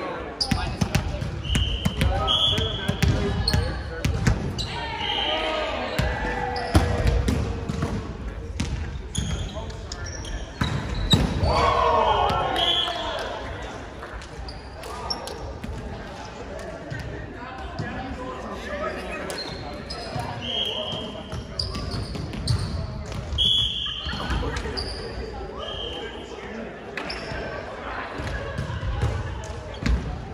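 Indoor volleyball play in a large gym hall: sneakers squeak on the hardwood floor again and again, the ball thuds off hands and the floor, and players call out to each other.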